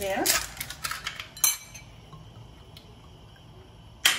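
Metal spoon knocking and scraping against a ceramic bowl while seasoned raw lobster pieces are mixed: several sharp clinks in the first second and a half, the last the loudest.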